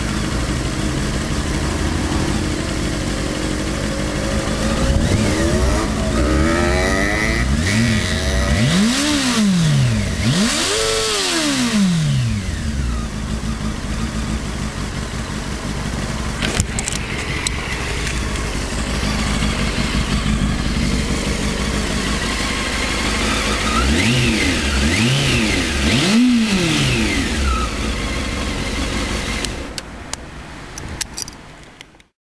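2002 Honda Hornet 600's inline-four engine idling through its stock exhaust, with quick throttle blips that rise and fall in pitch. There are several blips between about five and twelve seconds in, the highest about eleven seconds in, then three more quick blips late on.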